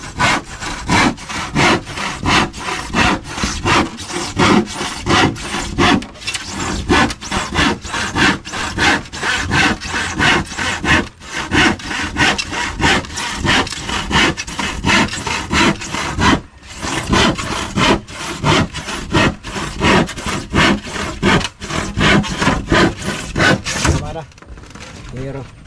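Handsaw cutting through a sheet of plywood in steady back-and-forth strokes, about two a second, with a brief pause about two-thirds through.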